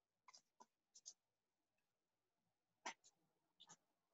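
Near silence, with a few faint short clicks and scratches in pairs: a computer mouse being clicked and dragged to draw on screen.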